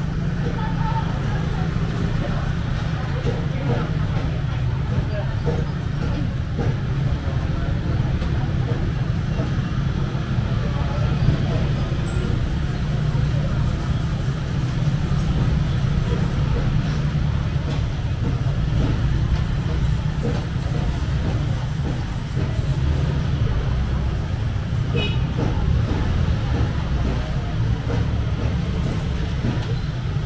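Busy market ambience: a steady low rumble throughout, with indistinct background voices.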